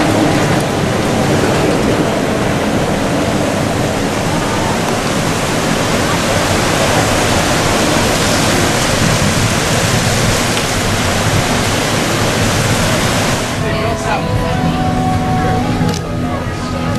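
Walt Disney World monorail passing overhead on its concrete beam: a loud, steady rushing noise that drops away about thirteen seconds in.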